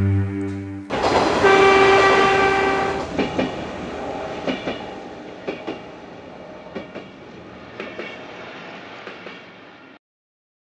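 A train passing: its horn sounds once, then the wheels click over the rail joints in pairs, fading away.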